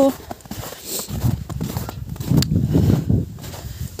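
Footsteps walking through snow: a run of low thuds and rustles starting about a second in.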